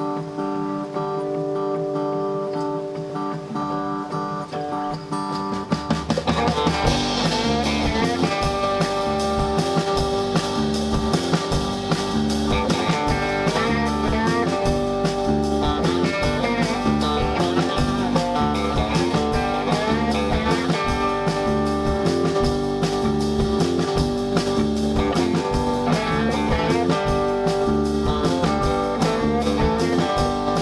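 Live rock/americana band playing an instrumental intro. At first guitar plays alone; about six seconds in the drum kit, electric bass and electric guitar come in, and the band plays on together with no singing.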